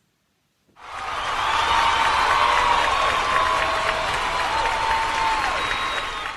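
Recorded applause from a large audience, with some cheering, cut in sharply after a moment of dead silence about a second in and running steadily.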